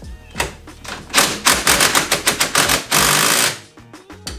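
Impact wrench working a suspension bolt: a run of rapid rattling strikes from about a second in, then a short continuous burst about three seconds in that cuts off.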